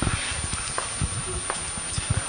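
Room noise: a steady hiss with a few faint, short knocks.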